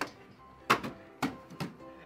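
A small television set thrown onto a dry lawn, landing with one loud thud and then bumping twice more, more softly, as it tumbles to rest.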